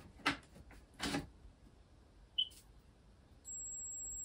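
Two short clicks as the Lear Siegler ADM-31 terminal is plugged into the mains. About three and a half seconds in, a steady high-pitched whine starts from the powered-up terminal: the horrible noise that comes with static on its CRT, a sign of the high voltage coming up.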